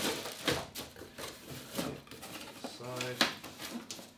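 Cellophane-wrapped parts and a cardboard box being handled: rustling with a string of light knocks and clicks. A brief murmured voice sound comes about three seconds in.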